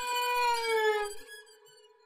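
Background music: a long held violin note that slides down in pitch and fades out partway through, leaving near silence.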